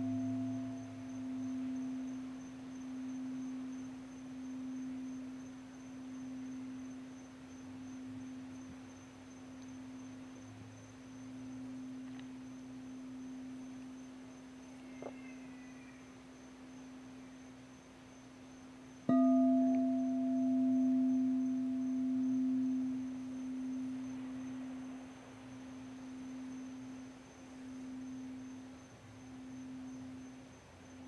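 Crystal singing bowl ringing with one low, pure tone that wavers in a slow pulse as it fades. About two-thirds of the way through it is struck again: the tone comes back loud with brief higher overtones, then slowly fades.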